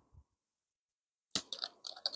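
Faint clicks and light crackles of a small bottle being handled at its cap, starting about a second and a half in after near silence.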